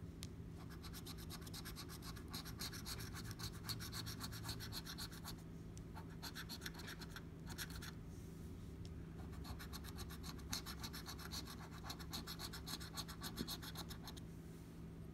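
A coin scratching the coating off a lottery scratch-off ticket in quick back-and-forth strokes: a long run, a brief pause, a short burst, another pause, then a second long run.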